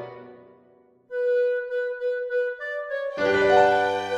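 Tango arrangement for clarinet, violin, guitar and piano: a full ensemble chord dies away, a single melody instrument holds a long note and steps up to a higher one, then the whole ensemble comes back in about three seconds in.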